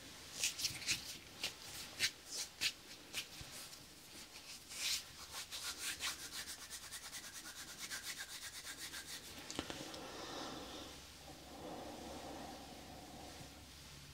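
Bare palms rubbed and brushed together close to the microphone: irregular crisp skin rubs at first, then a fast, even back-and-forth rubbing, easing into softer, duller hand movements near the end.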